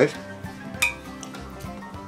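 A metal spoon clinks once against a plate as food is scooped up, over steady background music.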